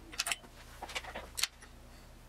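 A quick run of light clicks and rattles, like small hard objects being handled, over a faint steady low hum.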